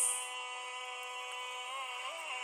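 Hip-hop beat's sustained synth chord held through a drum and vocal drop-out, with a short hi-hat hit at the start and a note that bends near the end.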